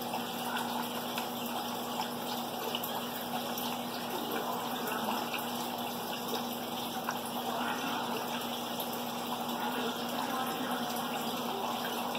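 Steady running water of an aquarium and its hang-on breeder box's water flow, with a low, constant hum underneath.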